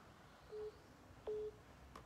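Two short telephone line beeps from a smartphone's speaker, both at the same pitch and about three-quarters of a second apart. The second beep is louder and comes just after a faint click.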